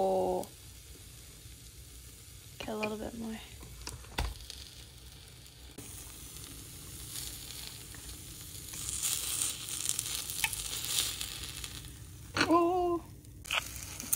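Kimchi pancake sizzling on the hot plates of a mini waffle maker. The hiss comes up about halfway through, is strongest for a few seconds, then dies away. A single sharp knock comes a few seconds in.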